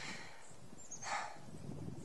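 Quiet pause in speech: faint outdoor background, with one short breath about a second in.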